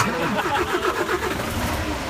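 A motor vehicle's engine running steadily, starting abruptly.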